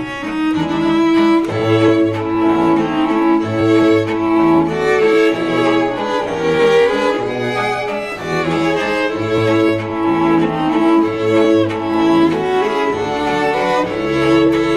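Background music on bowed strings, cello and violin, with long held notes over a bass line that changes note about every second.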